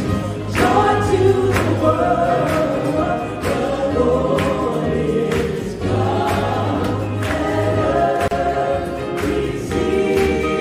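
A mixed vocal ensemble of men and women singing together in harmony over a live band, with sustained bass and a steady beat about twice a second.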